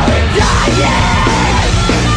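Loud heavy rock song with a yelled vocal over dense distorted instruments.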